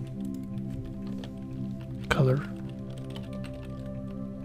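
Computer keyboard typing: scattered key clicks over steady background music. About halfway through comes one brief, loud voice-like sound that falls in pitch.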